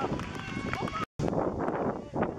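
Voices of onlookers calling out and chattering in the open air. About a second in, the sound cuts out completely for a moment, then a busier murmur of voices resumes.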